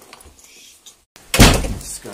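Quiet rustling, then a sudden loud thud of a door about a second and a half in, dying away over about half a second.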